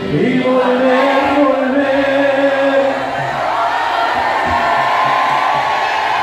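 Live band with saxophones: the drums and bass stop at the start and held notes carry on over a mass of crowd voices.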